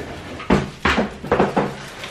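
Kitchen clatter: several sharp knocks in quick succession as cupboard doors and dishes are handled at the counter.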